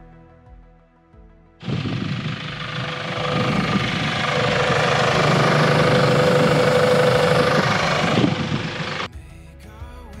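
Air hissing out of a 4WD's mud-terrain tyre through a screw-on deflator on the valve stem, letting the tyre down for driving in soft sand. The hiss starts suddenly about a second and a half in, swells a little, and cuts off about a second before the end.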